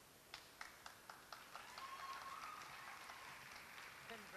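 Faint applause: a few sharp claps, about four a second, that thicken into light clapping from a small audience.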